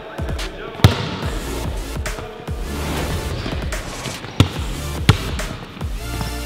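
A basketball being dribbled on a hardwood court, with sharp bounces about a second in and twice near the end, over background music.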